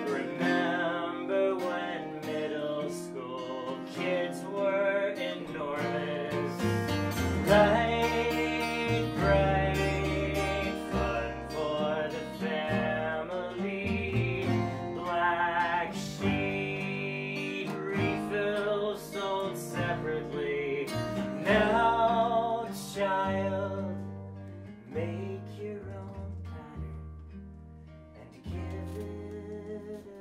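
A folk song performed live: strummed acoustic guitar and bowed-free plucked upright bass under a man's singing voice. The music grows quieter over the last several seconds.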